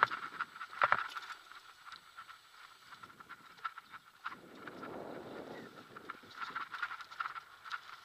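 Mountain bike ridden down a dirt singletrack: irregular rattling clicks and knocks from the bike over bumps, with a high-pitched buzz that comes and goes and a rush of tyre and wind noise about five seconds in.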